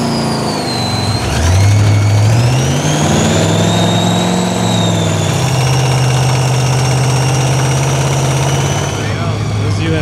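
Rock bouncer buggy's engine revving up about a second in and then held at high revs under load, as the buggy strains stuck in a frozen mud hole with its winch line out; a faint high whine runs above the engine note. The revs ease near the end.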